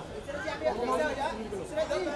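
Chatter: several people talking over one another.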